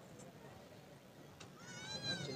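A goat bleating once, high-pitched and wavering, starting about a second and a half in.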